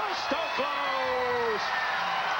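A man's single long shout, about a second long and slowly falling in pitch, over the steady noise of a stadium crowd as a beach volleyball point ends.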